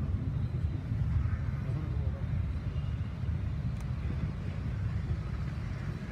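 Steady low outdoor rumble with faint voices in the background, easing slightly toward the end.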